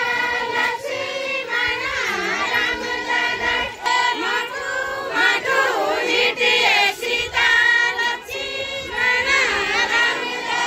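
A group of women singing a Kumaoni jhoda folk song together in chorus as they dance, phrase after phrase with short breaks between.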